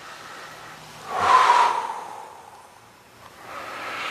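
A person's long exhale, breathed out through the mouth while straining into a stretch. It swells a second in and fades over about a second and a half.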